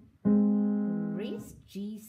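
A piano chord struck once about a quarter second in, left to ring and slowly fade, with a woman's voice speaking over its tail in the second half.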